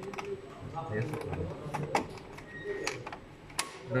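Several sharp mechanical clicks as a bypass breaker's rotary handle and its key interlock lock are worked by hand.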